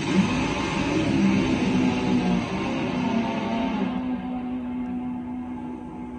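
Top Fuel nitro drag motorcycle launching off the line. Its engine note rises briefly, then holds one steady pitch and fades as the bike runs away down the strip. It is heard on an old VHS recording, with the top end of the sound cut off.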